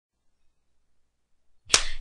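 Near silence, then a single sharp click near the end, just before speech begins.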